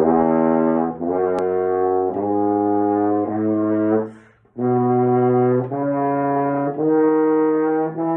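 French horn playing a slow scale in sustained, evenly held notes of about a second each, with a short break for breath about halfway through. It is practice of the B major scale.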